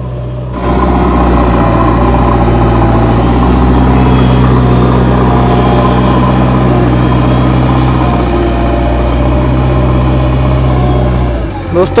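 JCB 3DX Xtra backhoe loader's diesel engine running at a steady speed, a constant low hum that keeps the same pitch throughout and drops away just before the end.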